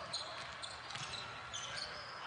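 A basketball dribbled on a hardwood court, a thump about every half second, with short high sneaker squeaks from players moving.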